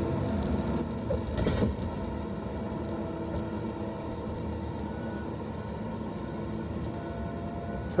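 Tigercat LX870D feller buncher running steadily, heard from inside its cab as the machine works a tree on a steep slope. A short knock or clatter comes about a second and a half in.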